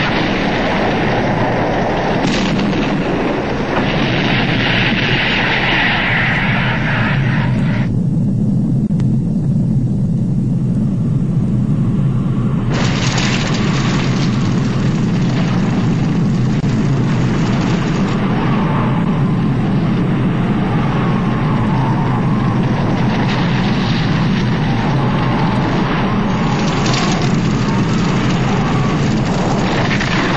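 Film sound effects of a nuclear blast wave and firestorm: a continuous loud, deep rumbling roar. The upper hiss dulls for a few seconds about a third of the way through, then cuts back in suddenly.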